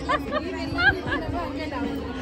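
Several people chattering and talking over one another, with a general crowd murmur behind them.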